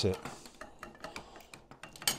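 Light metallic clicking and clinking of 1/6 scale Tiger 1 metal track links being handled and settled onto the road wheels, a scatter of faint irregular clicks.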